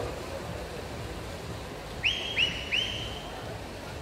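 Steady noise of crowd and splashing water in an indoor swimming hall. About two seconds in, three short, high whistle-like tones sound in quick succession, each rising quickly and then holding.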